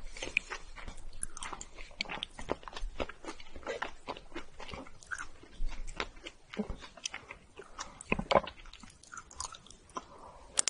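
Close-miked sticky, wet squishing and many small clicks as a soft mochi filled with strawberry and red bean paste is pulled apart and handled, then bitten and chewed near the end.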